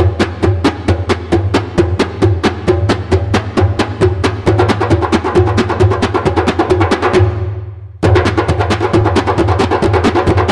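Several clay darbukas (goblet drums) layered together, playing a fast, dense rhythm of sharp strokes over a deeper bass tone. A little past seven seconds the playing dies away, then comes back in all at once about a second later.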